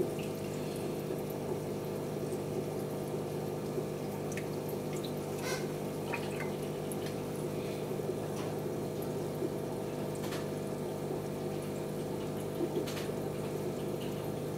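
Aquarium filter running: a steady motor hum under water splashing and bubbling at the surface from the filter's outflow, with a few sharper ticks scattered through.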